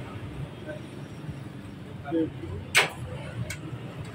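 Two sharp metallic clicks, the first the louder with a brief ring and the second about half a second later, as metal parts are handled during wiring work on a scooter, over a low steady workshop background.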